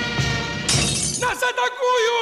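Title-card jingle: music with a regular beat, broken by a sudden bright crash about two-thirds of a second in, then a voice sliding up and down in pitch.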